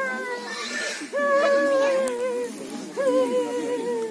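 A woman wailing: long drawn-out cries, each held over a second and sagging slightly in pitch, with other voices lower beneath.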